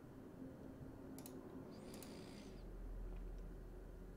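Faint clicks of a trackball mouse's button: two quick press-and-release clicks about one and two seconds in, and a lighter tick later. A soft hiss comes around the second click.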